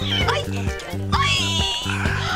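Background music with a steady bass beat, over which a cat mews twice: a short cry at the start and a longer, rising then held cry about a second in.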